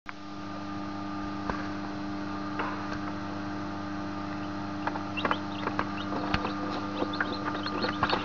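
Egg incubator humming steadily. Faint scattered ticks and brief high peeps of newly hatched chicks stirring among the eggshells come more often in the second half.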